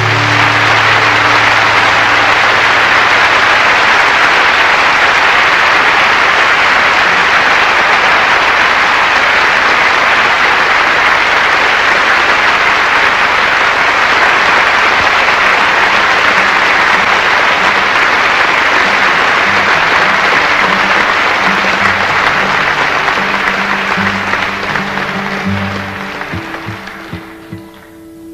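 A live concert audience applauding at length after a song ends, the applause dying away over the last few seconds. A few quiet low notes from an instrument sound underneath in the second half.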